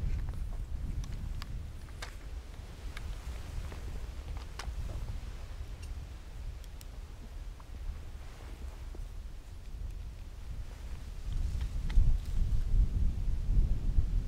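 Rustling and handling noise from a hunter's clothing and kit as he moves and brings a scoped air rifle up to aim, with a few faint clicks. A low rumble runs underneath and grows louder near the end.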